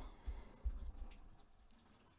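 A pause between speech: quiet room noise with a few faint low thumps in the first second.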